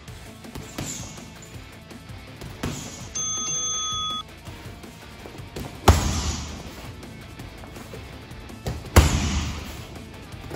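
Background music; about three seconds in, an interval-timer beep sounds for about a second, marking the start of a 30-second round. Then two right round kicks land hard on a heavy bag, about three seconds apart.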